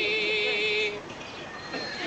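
A long held sung note with vibrato that cuts off about a second in, leaving a quieter street background.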